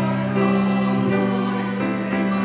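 Church choir of mixed voices singing an anthem in long held notes, accompanied by a grand piano.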